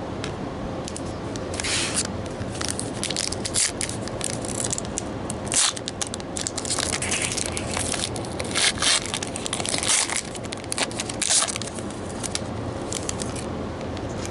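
Foil wrapper of a trading-card pack crinkling and crackling as it is torn open and pulled apart by hand, in irregular bursts of crisp crackles.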